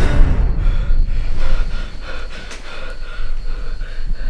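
A man gasping as he jolts awake from a nightmare, then panting in quick, short breaths, about three a second. A low rumble runs beneath.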